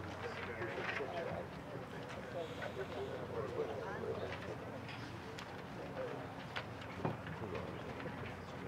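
Quiet murmur of voices from a band and outdoor audience between pieces, with scattered small clicks and knocks from players shifting and handling music stands and pages. The sharpest knock comes about seven seconds in.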